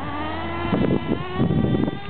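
A 1/16-scale RC car's motor whining on a dirt track, its pitch rising and falling over and over as the throttle is worked.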